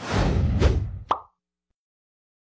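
Short sound-effect stinger over an animated podcast logo: a noisy whoosh with a low rumble lasting about a second, ending in a sharp pop just over a second in, then the sound cuts off suddenly.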